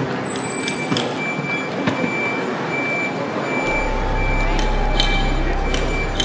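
A vehicle's reversing alarm beeping steadily, a single high tone repeating a little faster than once a second, over street bustle; a low engine hum comes in just over halfway through.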